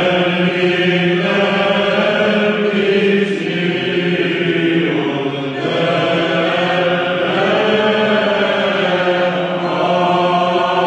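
Byzantine choir chanting a Greek Christmas troparion: a melody sung over a steady, held low drone (the ison).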